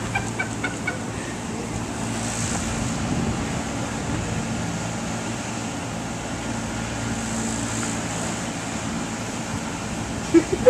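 Steady outdoor background noise with a faint low hum underneath, after brief laughter in the first second.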